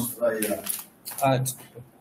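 A man speaking Portuguese in two short bursts, the second a brief "ah", then quiet room tone.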